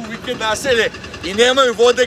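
Speech: a voice talking, with no other sound standing out.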